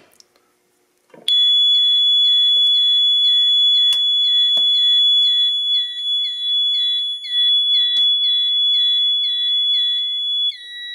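System Sensor mini horn sounding after a medical pull station is pulled: from about a second in, a loud, steady, high piezo tone with a fast pulsing chirp riding on it at about three a second, sounding like a smoke alarm. A few sharp clicks from the pull station and handling fall across it.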